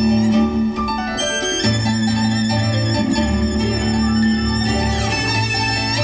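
Live violin and electronic keyboard duet amplified through large loudspeakers: the violin plays a sustained melody over keyboard chords and a steady low bass line.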